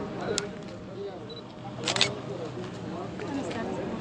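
People talking faintly in the background, with a sharp click about half a second in and a louder double click about two seconds in.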